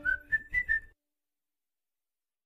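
Tail of a background music track: four short whistled notes in the first second, then the track cuts off to dead silence.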